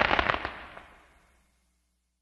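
Fireworks-style crackling sound effect closing the song: a quick run of small pops that dies away within about a second.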